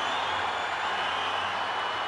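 A large indoor arena crowd cheering and applauding in a steady, continuous wash of noise with no single event standing out, as swimmers race down the final length toward the finish.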